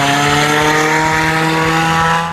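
Honda Civic sedan's engine and exhaust, loud under acceleration as the car pulls away, the note rising slowly and steadily in pitch.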